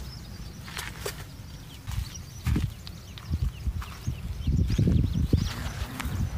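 Western grey kangaroo growling at another kangaroo in a confrontation: low, guttural bouts, one about halfway through and a longer run near the end. Faint bird chirps sit above.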